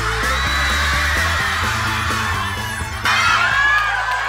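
Background music with a steady bass line, over a crowd of schoolchildren screaming and cheering. The crowd gets suddenly louder about three seconds in.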